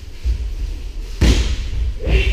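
Dull thuds of bodies and feet landing on tatami mats during partner throwing practice, with one heavy slam about a second and a quarter in.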